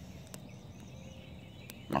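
Wood campfire crackling quietly with a couple of sharp pops, under faint bird chirps in the background.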